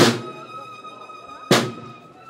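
Marching band drum beating single strokes, one right at the start and one about a second and a half later, each with a short ringing tail. A steady high held note sounds under the strokes.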